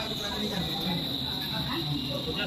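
Continuous high-pitched insect trill, cricket-like, holding one steady pitch, over faint murmuring voices.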